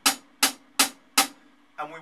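Drumstick tapping out a steady pulse of sharp, quickly decaying clicks, four strikes evenly spaced in eighth notes at about 80 beats per minute.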